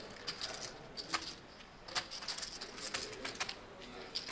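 Poker chips clicking against each other as they are handled and stacked at the table: a scattered series of sharp, irregular clicks.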